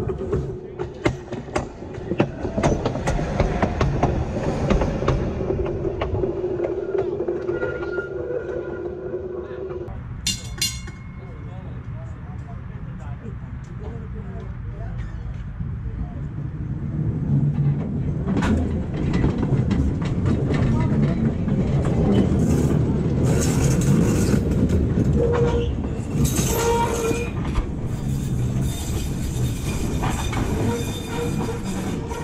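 Electric streetcar running on track: a steady motor hum for the first ten seconds, then, after an abrupt change, a PCC streetcar getting under way, with rumble and wheel noise that grow louder and clicks over the rail joints.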